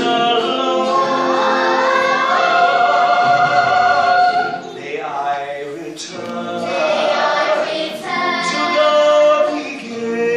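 Children's choir singing together in long held notes, with dips in the singing about five seconds in and near the end.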